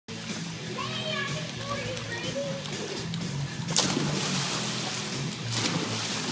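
Children splashing in a swimming pool, with a loud splash nearly four seconds in and a smaller one shortly before the end.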